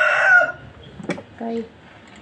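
A rooster crowing, its last drawn-out note ending about half a second in. A single sharp click follows about a second in.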